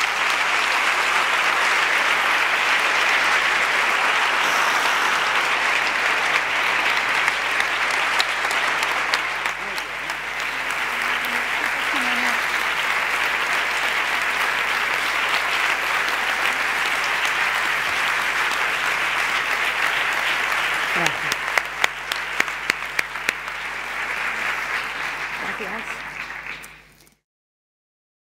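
A large audience in an auditorium applauding steadily for nearly half a minute, with a few voices heard through the clapping. The applause cuts off suddenly near the end.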